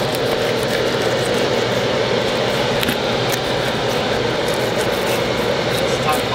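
A steady engine drone that holds its pitch throughout.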